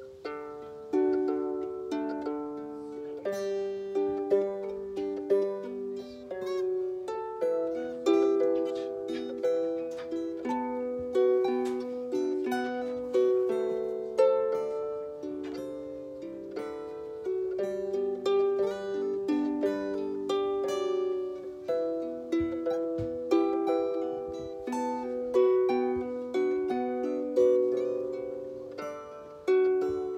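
A harp and an acoustic guitar playing together, a steady run of plucked notes that ring and fade one after another.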